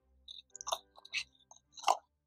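A cardboard ink box being handled, a string of short crinkly rustles and light scrapes, the loudest near the end.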